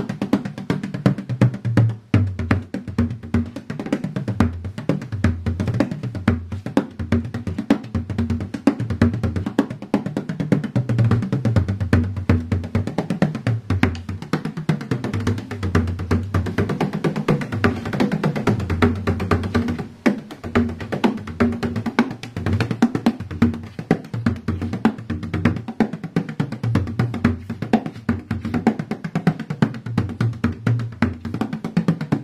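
Bodhrán with a thin calf-skin head played with a tipper in a fast, continuous rhythm, its low notes bent up and down by the hand on the back of the head. The playing eases briefly about twenty seconds in.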